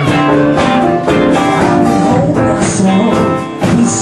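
Live band playing, with guitars to the fore over a steady rhythm.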